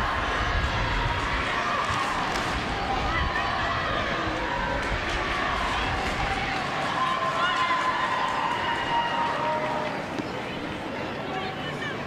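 Soccer stadium crowd noise, a steady murmur of the crowd with scattered distant voices and shouts.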